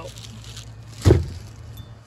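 A single loud thump about a second in, over a steady low hum.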